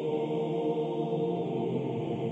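Choral chant music, voices holding long steady tones.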